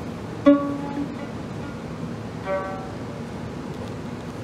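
Violin strings plucked by a small child's fingers: one sharp plucked note about half a second in, ringing briefly, and a second, softer note about two and a half seconds in.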